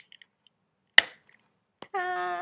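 A single sharp snap about a second in, with a few faint clicks before it: a Snap Circuits wire piece snapping onto its metal snap stud. It is the last connection, which closes the circuit of battery pack, wires and lamp.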